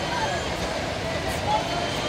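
Steady din of a bumper-car ride in operation, with faint voices of people mixed in.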